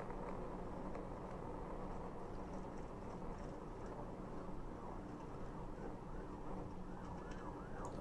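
Police cruiser in pursuit at speed: steady engine and road rumble, with a siren's fast rising-and-falling yelp coming through, plainest in the second half.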